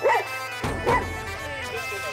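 A dog barking twice: one bark right at the start and another just under a second later, over steady droning background music.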